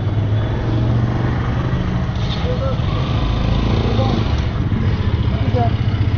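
Motorcycle engine running steadily at low road speed, heard from the rider's seat as a constant low hum.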